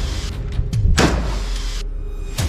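Dramatic whoosh sound effects over a deep low rumble, with a strong swoosh about a second in; the high part cuts off sharply just before the end.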